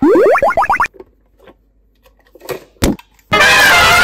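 Edited-in cartoon sound effects: a quick rising spring-like glide lasting under a second, then quiet with a single sharp tap, then a loud, bright, sustained musical sting from about three seconds in that marks the box being opened to show what is inside.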